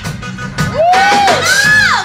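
Live soul band performance with a woman's voice letting out two long rising-and-falling cries over the band, the second higher than the first, amid crowd cheering.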